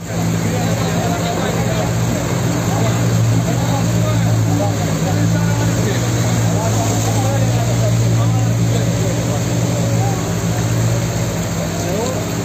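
Diesel engine of a wheel loader running steadily, a low hum, with floodwater running through the street and voices in the background.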